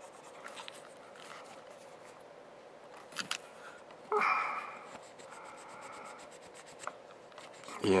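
Faint scratchy rubbing of a cotton swab wetted with acetone scrubbing metal connector pins on a circuit board, with small clicks and a louder rub about four seconds in.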